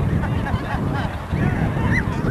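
Wind rumbling on the microphone, with many short, high calls or shouts scattered over it.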